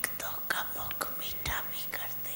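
A woman's soft, breathy whispering close to a microphone, with several short mouth clicks, between spoken phrases.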